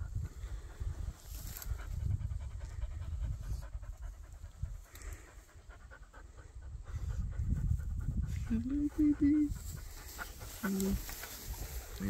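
A dog panting, over a low, uneven rumble on the microphone.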